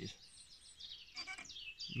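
Wild songbirds singing and chirping, with many quick, high notes and trills throughout and a short call about a second in.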